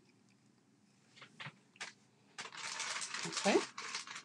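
Handling noise from a plastic glue tube being capped and put down: a few small clicks, then a rustle lasting about a second and a half.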